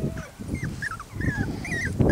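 A puppy whimpering: a quick string of short, high, wavering squeaks, about half a dozen, with soft scuffling of play underneath.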